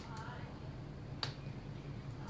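Hands patting the skin of the face: two sharp slaps, the second one louder, over a steady low hum.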